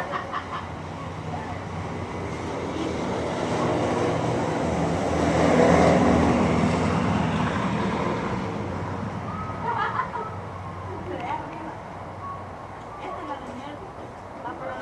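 A motor vehicle passing: engine and road noise build to a peak about six seconds in, then fade, with short bursts of voices in the background afterwards.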